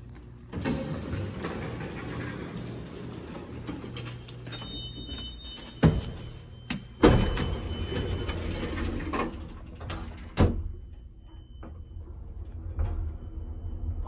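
Old Otis elevator, modernized in the 1960s, working: its doors slide with a rattle, several sharp knocks come a few seconds apart around the middle, and a last thud follows a few seconds before the end as the doors shut, over a steady low hum from the machinery. A high steady tone sounds for about a second near the middle, with fainter short tones later.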